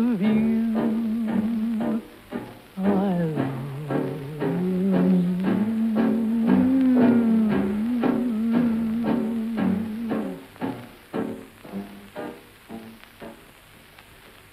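A slow 1940s dance-band love song, a crooner holding long wavering notes over a steady beat. The sung melody stops about ten seconds in, and the beat trails off quietly after it.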